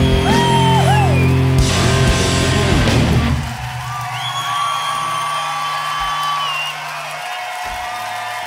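A live rock band with distorted guitars and a singer plays the last bars of a song, and the full band cuts out about three seconds in. Held notes then ring on over a cheering, whooping crowd.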